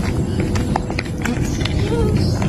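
Footsteps on a paved street, a few irregular sharp steps over steady low outdoor background noise.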